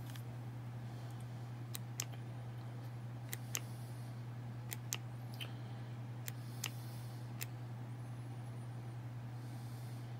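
Steady low hum with about ten faint, sharp clicks scattered through, from an infrared thermometer being handled while it takes readings.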